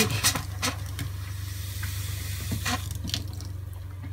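Kitchen faucet running a stream of pink RV antifreeze into a stainless steel sink, with the RV's water pump running steadily underneath as a low, rapidly pulsing hum. The faucet is open, so the pump runs on to keep the lines pressurized. A few faint clicks, and the stream stops near the end.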